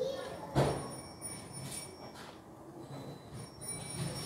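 Noise from neighbours: a single sharp thud about half a second in, with faint voices murmuring.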